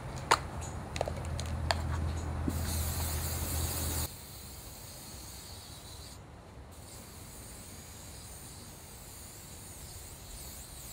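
Aerosol spray can: a few sharp clicks, then a hissing spray burst of about a second and a half that cuts off abruptly about four seconds in. Faint steady background noise follows.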